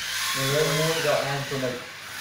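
A man's voice speaking while a marker squeaks faintly in a high thin whine as it writes on a whiteboard.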